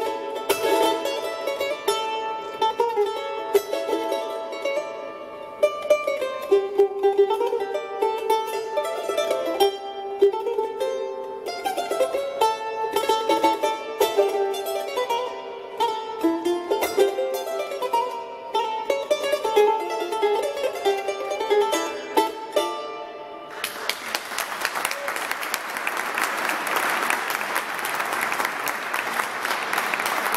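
Solo charango playing a carnavalito, with quick plucked and strummed notes. The music ends about three-quarters of the way through and audience applause follows.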